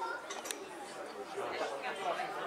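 Several people talking at once in the background, with one sharp click about a quarter of the way in.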